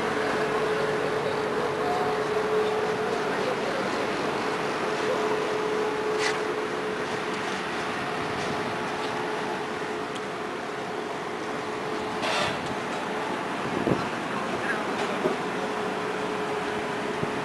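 Tram standing at a stop with its doors open: a steady hum from its onboard equipment over street background noise, with two short hisses about six and twelve seconds in.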